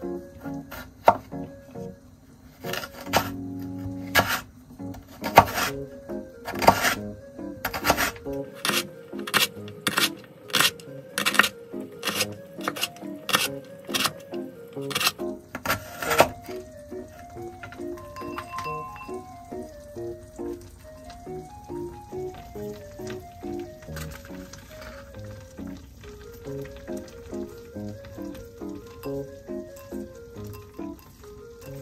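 Kitchen knife chopping vegetable peel into thin strips on a wooden cutting board, with sharp knocks about two a second that stop about halfway through. Light background music plays throughout and carries on alone after the chopping ends.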